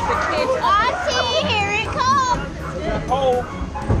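Several children's voices shouting and squealing over one another, high and wavering, with no clear words.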